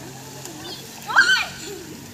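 A child's short, high-pitched shout about a second in.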